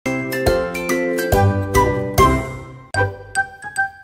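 Bright musical jingle of chiming, bell-like notes over a few low bass hits, a children's channel logo sting. Full chords for the first three seconds, then a short break and lighter single notes.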